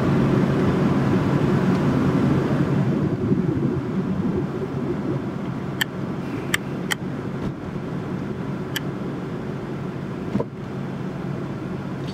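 Steady engine and tyre noise of a car driving along a road, heard from inside the cabin, growing gradually quieter. A few short sharp clicks sound around the middle, and a soft thump near the end.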